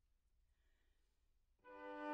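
Near silence, then a flute, violin and cello trio starts playing together with a sudden entry about one and a half seconds in.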